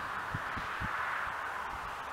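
Steady outdoor background hiss, with a few faint soft knocks.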